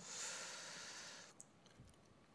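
A man's audible breathy exhale into the microphone, about a second and a half long, fading away.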